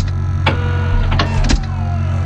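Tense film score: a low rumbling drone with held tones, cut by four or five sharp clicks spread unevenly across it.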